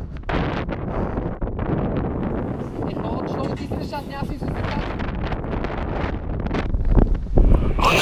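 Wind buffeting the microphone, a heavy uneven rumble mixed with rustling, growing strongest in gusts near the end.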